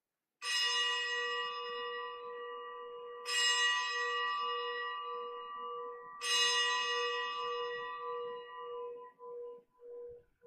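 A bell struck three times, about three seconds apart, each stroke ringing on and slowly dying away over a low, wavering hum. It is the consecration bell, rung at the elevation of the host.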